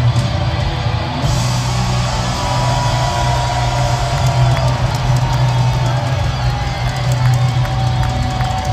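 Live rock band in a large arena: electric guitar holding long, bending notes over a sustained low bass note and drums, with crowd cheering mixed in.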